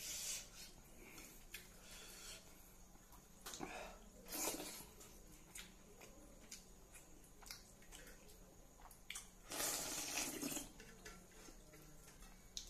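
Wet eating sounds: fingers squelching through rice and smoked-pork gravy in a steel bowl, with mouth and chewing noises. Scattered small clicks and a few short louder wet bursts, the longest about ten seconds in.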